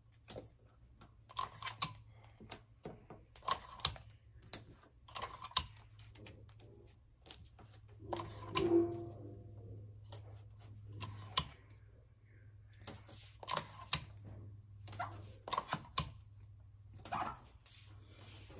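Green heat-resistant tape being pulled off, torn into short strips and pressed down over sublimation paper on a puzzle blank: a string of irregular sharp clicks and crackles with light paper handling.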